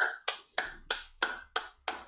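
Steady hand clapping, a run of sharp claps at about four a second.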